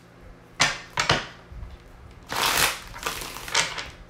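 A deck of cards shuffled by hand: four quick bursts of cards rustling and slapping together, the longest about halfway through.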